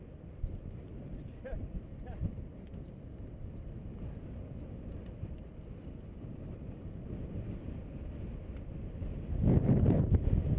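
Wind buffeting a bicycle rider's camera microphone while riding on pavement, a steady low rumble, swelling much louder for the last moment.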